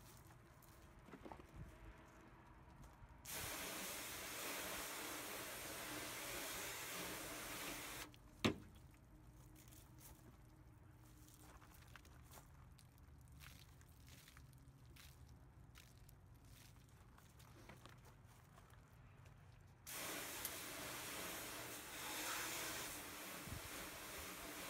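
Hose nozzle spraying water onto a painted car panel to rinse off wash soap: two spells of steady hiss, each about four to five seconds long, with a single sharp click between them.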